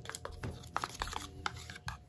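Plastic spoon clicking and scraping against a plastic cup of acrylic paint as it is picked up and scooped, a quick irregular run of light clicks.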